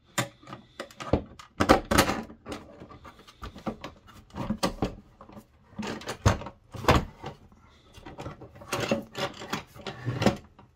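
Handling noise from an antenna mount being assembled: a string of irregular knocks, clunks and rubs. The sources are the metal bracket, U-bolt and antenna housing moving against PVC pipe and a wooden tabletop.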